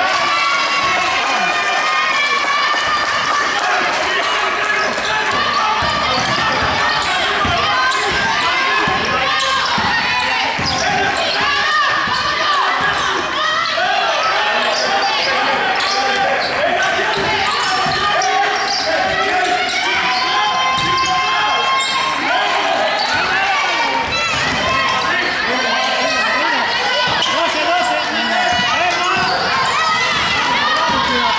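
Basketball bouncing on a hardwood court, with voices of players and spectators calling out throughout.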